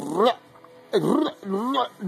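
Baby cooing: a few short wordless vocal sounds, each sliding up in pitch, with brief pauses between them.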